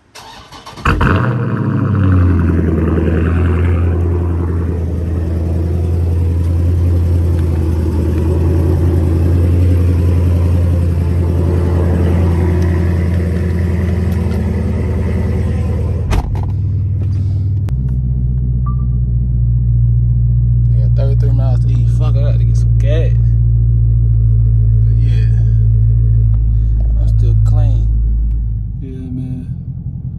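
Dodge Challenger engine starting about a second in, then idling high and steady with a deep, low exhaust note. The idle drops lower near the end.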